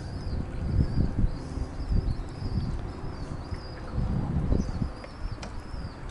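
Wind buffeting the microphone in irregular low gusts, with faint high chirping in the background.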